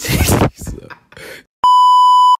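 A short, loud, noisy burst at the start, then a steady edited-in electronic bleep tone. The bleep is the pure, high, censor-style kind; it starts past halfway, lasts about three-quarters of a second and cuts off abruptly.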